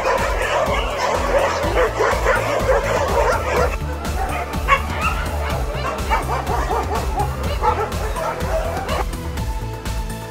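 A dog barking in quick, dense succession for the first few seconds, then in shorter, more spaced-out calls that stop about a second before the end, with background music underneath.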